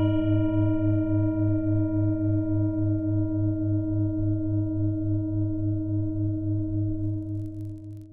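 Singing bowl ringing after a single strike, its tone wavering about four times a second and slowly fading near the end.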